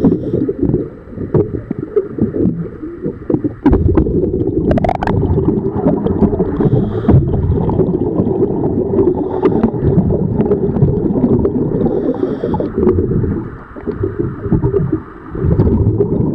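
Muffled rumbling and bubbling water noise picked up underwater through a camera housing during in-water boat hull cleaning, with scattered sharp clicks and a brief rising whine about five seconds in.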